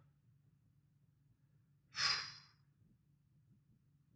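A single short breathy exhale, like a sigh, about two seconds in, set in otherwise quiet room tone.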